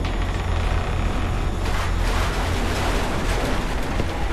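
Loud, steady, dense rumbling noise with a heavy deep low end from a horror film's soundtrack.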